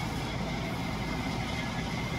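Steady machine hum and hiss with a faint high whine, like a fan or motor running continuously.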